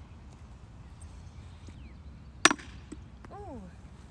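A single sharp crack about two and a half seconds in: a hand tool striking a rock set on a wooden tree stump to break it open.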